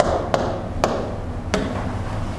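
Four sharp taps on the glass of an interactive touchscreen board as tools are picked from its on-screen toolbar, over a steady low hum.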